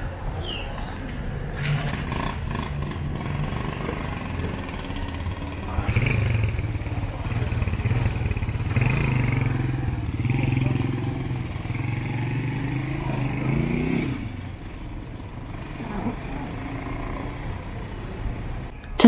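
Street noise with a small motorcycle-type engine running, loudest through the middle and rising in pitch before it fades about fourteen seconds in, with passers-by talking.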